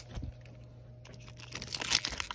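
Foil wrapper of a Panini Mosaic soccer trading-card pack crinkling as it is picked up and handled, starting about one and a half seconds in after a quiet stretch with only a faint steady hum.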